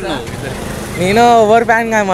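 Steady street noise, then about a second in a man's voice holding one long drawn-out sound.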